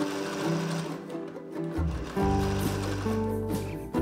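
Electronic sewing machine stitching through fabric, mixed with instrumental background music; a deep bass comes into the music about halfway through.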